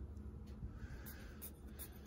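Faint puffs of air from an empty plastic squeeze bottle squeezed by hand, blowing bubbles out of a bed of white glue, with a few small plastic clicks.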